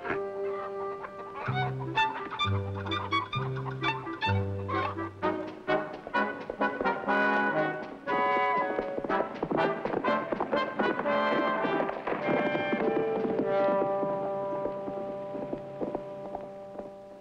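Orchestral background score with brass. It opens with low held brass notes, then moves into a busier passage with a quick, driving rhythm.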